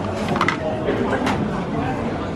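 Indistinct chatter of many people in a busy dining hall, with a couple of light clinks of dishes.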